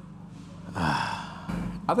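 A man's audible sigh, a breathy exhale with some voice in it lasting under a second, over a low steady hum; his speech begins right after it.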